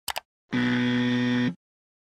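Electronic transition sound effect: two quick clicks, then a steady, even buzz tone held for about one second that cuts off abruptly.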